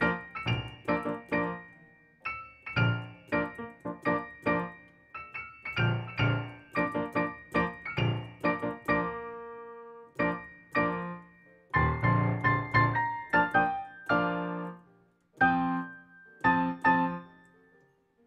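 Piano played solo: a classical piece practised from the score in quick, short chords and runs of notes, stopping briefly a few times and picking up again.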